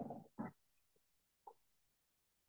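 Near silence in a small room, with two short breathing noises from a man in the first half second and a faint tick a little later.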